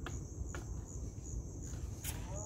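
A high-pitched insect call, a steady trill that pulses about two to three times a second, over a low rumble, with two short clicks near the start.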